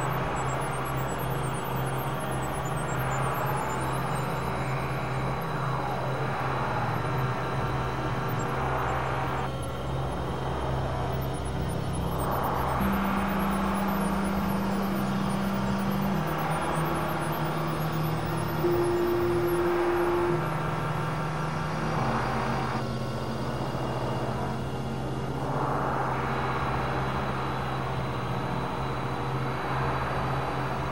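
Experimental synthesizer drone music: low sustained tones that step to new pitches every few seconds, with a brief higher held note about two-thirds of the way through. Over them a noisy wash swells and breaks off every several seconds.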